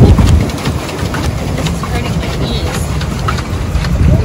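Wind buffeting the microphone in a steady low rumble, over water moving and lapping around a swan pedal boat out on the lake.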